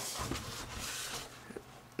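Soft rubbing and handling noise from a hand working over a smartphone's screen protector, fading after about a second, with a couple of faint ticks.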